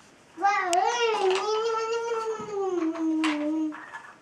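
A young child's voice holding one long, drawn-out wavering note for about three seconds, rising a little and then sliding slowly down, with a sharp click of the wooden nesting-doll pieces under it about a second in.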